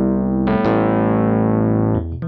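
Kurzweil PC4 stage keyboard playing a sampled electric piano patch resampled from a stage piano: a held chord rings on, then a new chord is struck about half a second in and sustains with a long, slow decay.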